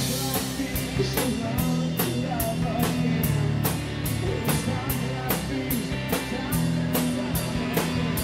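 A rock band playing live: electric guitars, bass guitar and a drum kit, with a steady beat of about two to three drum strokes a second.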